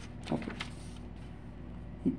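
Sheets of paper being turned over and handled, a few brief rustles in the first half-second or so, over a steady low electrical hum.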